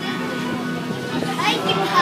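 A group of voices singing a hymn together in held notes, with children's voices talking over it in the second half.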